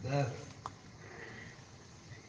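A man's short voiced sound at the start, then a single small click, likely from the mouth, in a pause in his talk, with faint room noise after.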